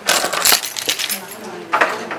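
A quick run of light clinks and rattles from small hard objects being handled, loudest in the first half-second, with another short burst near the end.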